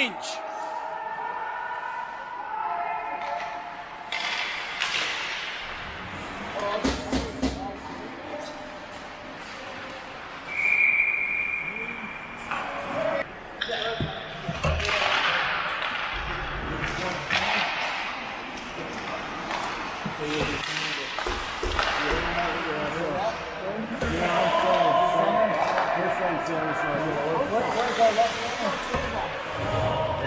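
Ice hockey game on a rink: sharp clacks of sticks and puck and knocks against the boards, with skaters' scraping and players' shouts. About a third of the way in a referee's whistle blows once, steady and high, for about a second and a half, stopping play before a faceoff.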